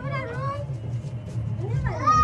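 A group of people chattering excitedly, with high-pitched squeals from children rising and bending in pitch at the start and again near the end.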